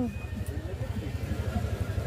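Low, steady machine hum with a fast throb, under faint voices.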